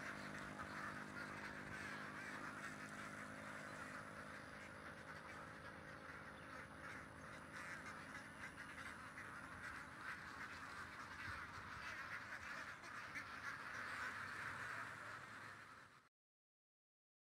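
A large flock of domestic ducks quacking together in a faint, continuous, dense chatter.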